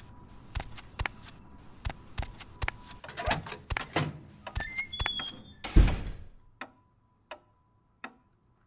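Sound effects: evenly spaced light taps, about one every two-thirds of a second, then a busier stretch with several short high-pitched tones, and one loud thump about six seconds in, after which only a few faint clicks remain.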